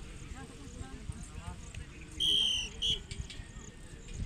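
Referee's whistle: one blast of about half a second a little past halfway, then a short second blip, signalling the penalty kick to be taken. Faint voices of onlookers throughout.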